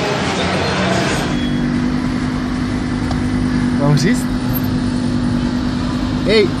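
Crowd babble for about the first second, then a steady low hum of an idling car engine, with a brief voice about four seconds in.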